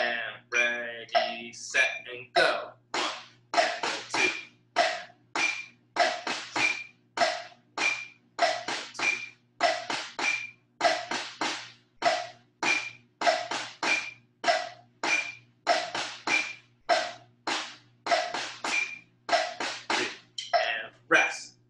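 A metronome clicking steadily with a wood-block-like tick, a little faster than two beats a second.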